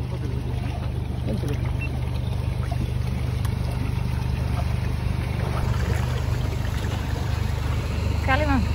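Water splashing and churning in a fish tank as many fish crowd the surface to be fed, over a steady low machine hum.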